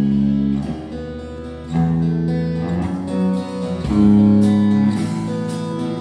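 Live acoustic guitar music in an instrumental passage: the guitar is played under long held notes that change every second or so, with no singing.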